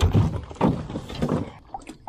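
A wet snook set down on a small boat's deck and thrashing: a sharp thump at the start, then several wet slaps and knocks against the hull over the next second and a half, dying away.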